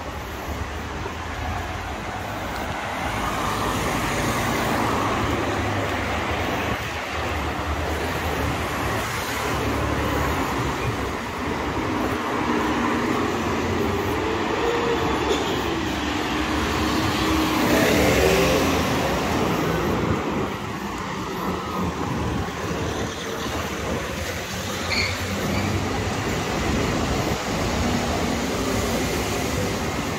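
City street traffic: motor vehicles running and passing on the road. One engine note wavers up and down for several seconds and swells to the loudest point about 18 seconds in as it passes close.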